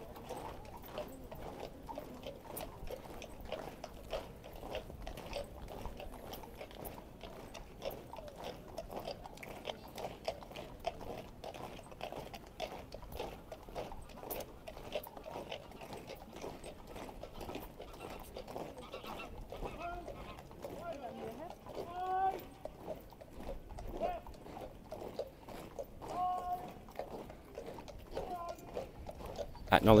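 Boots of a column of marching guardsmen on the road, a steady tramp of many footfalls, with voices from onlookers.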